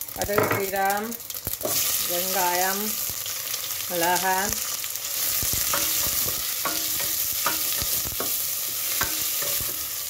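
Oil sizzling in a stainless steel pot as seeds and then sliced onions fry and are stirred with a wooden spoon. The sizzle grows fuller about two seconds in and carries on steadily.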